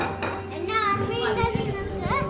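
Children's high-pitched voices calling and chattering among other people talking.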